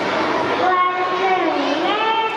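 A young child's voice in long, drawn-out, sing-song tones, starting near the first second, over a steady murmur of hall noise.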